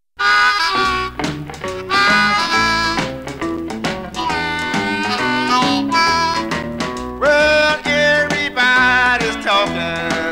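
Instrumental intro of a 1961 blues band recording: harmonica playing held, wavering lead notes over guitar, piano and drums. The music starts abruptly a moment in.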